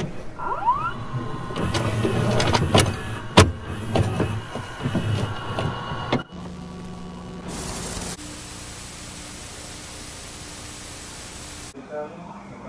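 Sound of a VHS cassette being loaded into a VCR: mechanical clicks and clunks with short rising motor whirs, then, after a sudden cut about six seconds in, a steady low hum and hiss of tape noise that stops shortly before the end.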